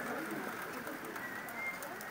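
Birds calling faintly against a murmur of distant voices, with a thin high whistled note near the end.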